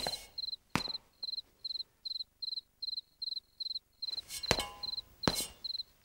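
A cricket chirping steadily, in short, evenly spaced chirps about two and a half a second. A few sharp knocks come through it, the loudest about four and a half and five seconds in.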